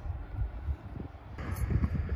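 Wind buffeting the microphone outdoors: a low, uneven rumble with a faint hiss above it.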